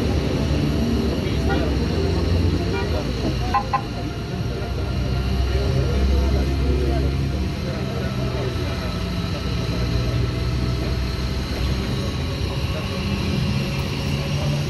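A vehicle engine running steadily at idle, with indistinct voices of people in the background and a couple of small clicks about three and a half seconds in.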